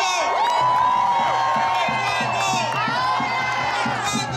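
A large crowd cheering and whooping, many voices shouting over one another.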